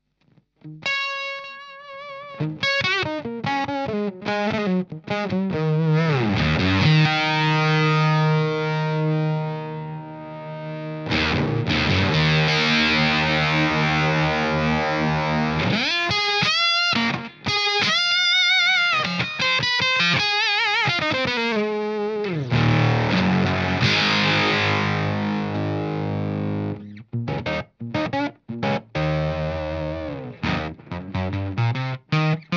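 Electric guitar played through the ProAnalog Ascension octave fuzz: sustained, distorted notes with a really peaky octave-up edge, bent and wavered with vibrato, with several slides in pitch between phrases.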